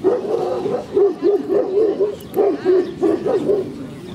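A dog barking in a quick series of short barks, about three a second, that stop just before the end.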